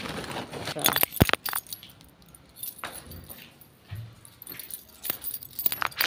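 A bunch of keys jangling and clinking: a few sharp clinks about a second in, then a busier cluster of clinks near the end.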